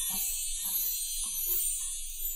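A shimmering, high-pitched sparkle-and-chime sound effect with soft chiming notes about twice a second, beginning to fade near the end.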